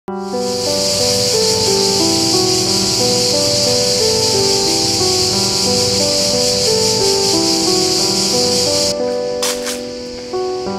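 Chorus of cicadas buzzing as a steady high-pitched hiss, over background music of slow held notes. The cicada sound cuts off suddenly about nine seconds in, leaving the music.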